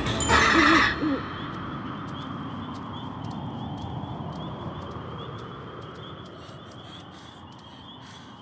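An owl hooting in the first second, low and wavering. It gives way to a steady, high chirring of night insects that slowly fades.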